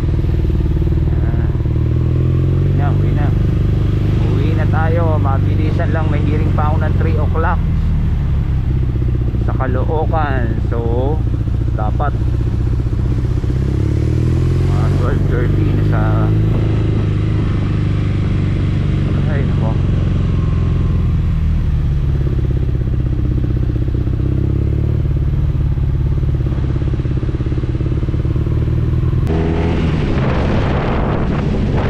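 Motorcycle engine running under way at road speed, its pitch rising and falling several times as the bike speeds up and slows.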